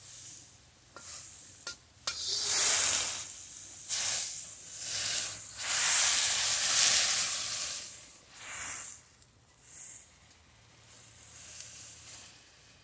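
Broccoli sizzling and bubbling in hot liquid in a carbon-steel wok as a steel wok spatula stirs it, the sizzle swelling and fading in waves with each stir. A few sharp clicks of the spatula against the wok come in the first few seconds.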